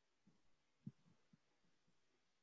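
Near silence with a few faint, dull low knocks, the clearest just under a second in.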